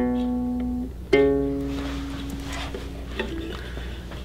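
Small nylon-string guitar strummed. One chord rings from the start, then a second chord is struck about a second in and left to ring, fading away.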